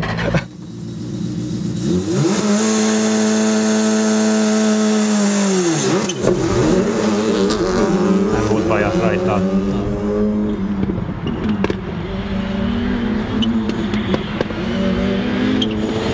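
Skoda Fabia RS Rally2's turbocharged 1.6-litre four-cylinder engine driven hard on track. It holds a steady high pitch, drops sharply about six seconds in, then climbs again in repeated rising sweeps through the gears.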